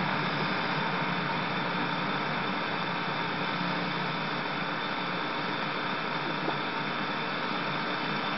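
Steady hiss with a faint low hum and no distinct events.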